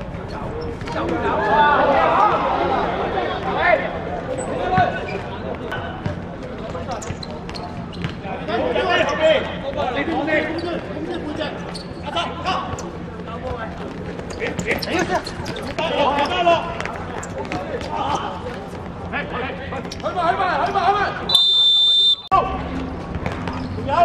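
Players' voices calling and shouting during a seven-a-side football match, with the thud of the ball being kicked on the hard pitch now and then. A little over 21 seconds in comes one short, shrill referee's whistle blast.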